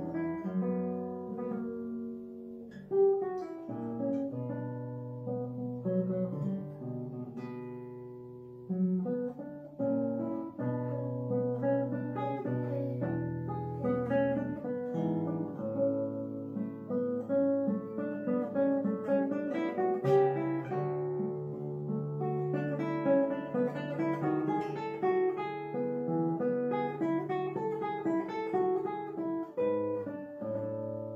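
Solo classical guitar with nylon strings, played fingerstyle: plucked melody and chords over held bass notes, with no break.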